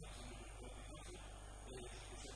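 Steady electrical mains hum, low and unchanging.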